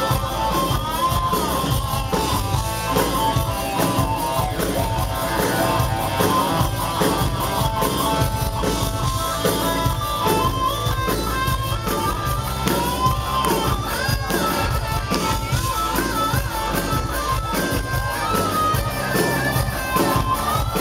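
Live hard rock band playing with a steady drum beat, electric guitar and bass under a male lead singer.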